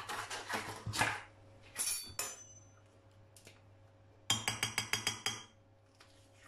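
A metal fork clinking rapidly against a glass mixing bowl: a quick run of light ringing strikes lasting about a second, past the middle, as margarine is worked into flour. Before it come a few soft knocks and rustles of handling a plastic margarine tub.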